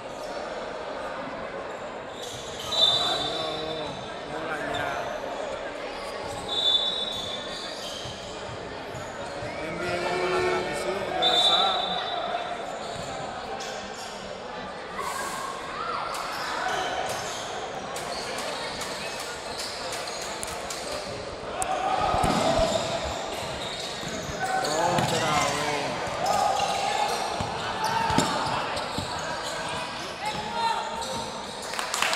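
A basketball being bounced and dribbled on a gym court, with players' and spectators' voices echoing in a large hall. Three short high squeaks come in the first twelve seconds.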